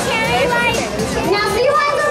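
Several children in an audience talking and calling out at once, their high voices overlapping.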